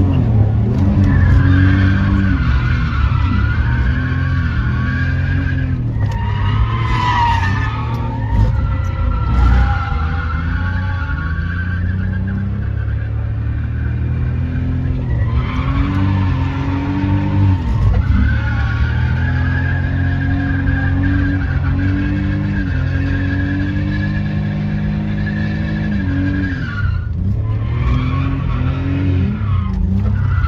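BMW E46 engine heard from inside the cabin, revving up and down over and over while drifting, with the tyres squealing under it and the squeal cutting out briefly three times.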